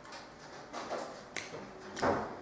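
A man's soft breathing and throat noises as he recovers from a sour drink, with a single sharp click about one and a half seconds in.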